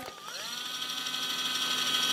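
Meditherapy Sok Sal Spin handheld body massager's electric motor spinning its roller head, a steady whine that rises in pitch about a quarter second in as it speeds up to the high setting, then holds steady.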